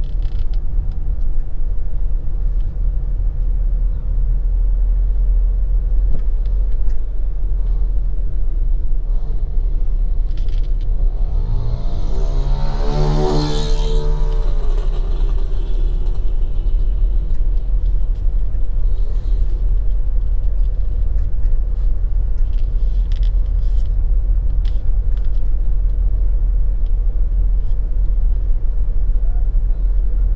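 Steady low rumble of a vehicle travelling along a paved road: engine, tyre and wind noise. About twelve seconds in, a brief pitched sound rises, holds and falls away over two or three seconds.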